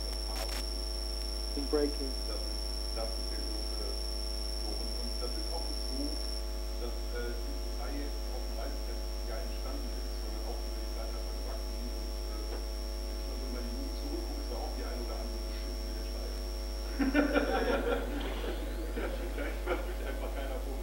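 Steady electrical mains hum with a thin high whine that cuts off near the end. Faint talk runs underneath, and voices rise louder about 17 seconds in.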